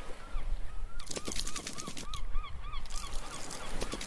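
A bird giving a quick series of short honking calls, about three a second, over intermittent hiss like breaking surf.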